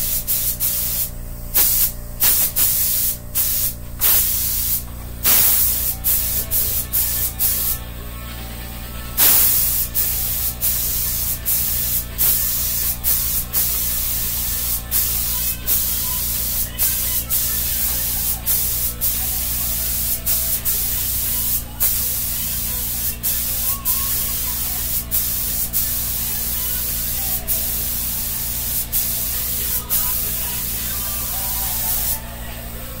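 Primer being sprayed onto a tailgate panel: a loud hiss that comes in short bursts with quick pauses for the first several seconds, then runs in longer passes with only brief breaks.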